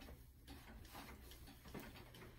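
A clock ticking faintly over near silence.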